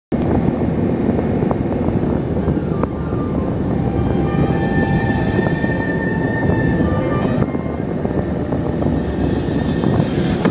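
Steady road and engine rumble heard inside a moving car's cabin. A faint high tone comes in over it in the middle seconds.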